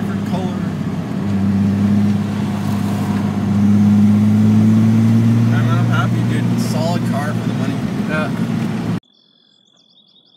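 Datsun 280ZX's fuel-injected L28E inline-six heard from inside the cabin while driving, its steady note rising a little and getting louder a second or two in, then holding. It cuts off suddenly near the end, leaving a faint outdoor bed with crickets.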